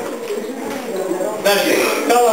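Classroom voices: a low murmur, then a man talking loudly from about one and a half seconds in.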